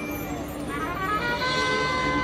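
Marching band playing: a softer held passage gives way, about a second in, to rising notes and a louder sustained brass chord.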